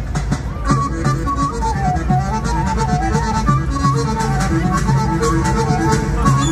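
Loud, amplified traditional folk dance music: a melody line comes in just under a second in over a steady bass and regular beats.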